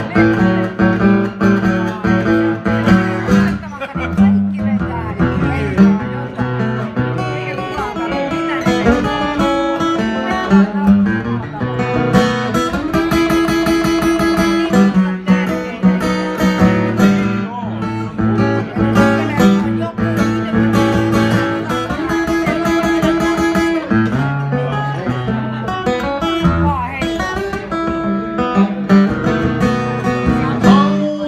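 Acoustic guitar playing an instrumental blues break: picked single-note lines and chords over a bass line, continuous throughout.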